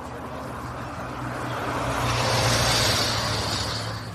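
A car passing on a wet street: the hiss of its tyres on the rain-soaked pavement swells to a peak about two and a half seconds in and then fades away, a drawn-out hiss that sounds like the word "yes".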